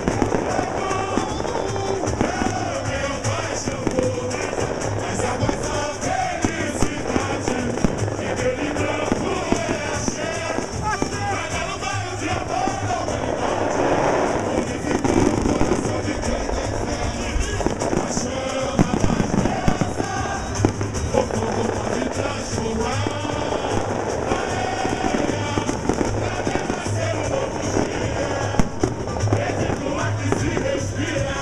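Live samba percussion playing in a dense, driving rhythm with a repeating low drumbeat, with crowd voices and singing mixed in.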